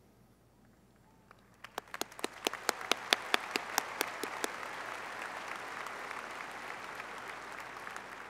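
Audience applause. After a quiet start, a few sharp, separate claps come in about two seconds in, then it swells into a steady wash of many hands clapping that eases off near the end.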